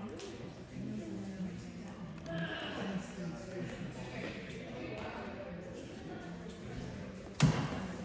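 Indistinct background voices and chatter in a gym, with one sharp, loud thud about seven and a half seconds in.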